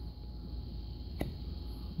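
A single sharp, short click about a second in, from handling the extended Nebo Slyde King LED flashlight, heard over a low steady hum.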